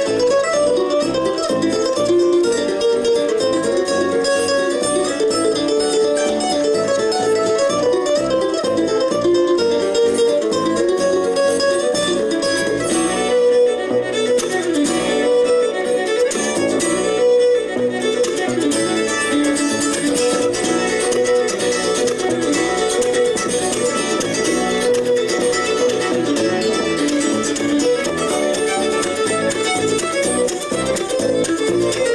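Live acoustic bluegrass instrumental: fiddle, mandolin, acoustic guitar and upright bass playing together.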